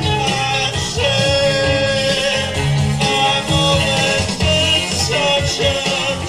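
Live rock band playing a long instrumental stretch: a busy, moving bass guitar line under electric guitar.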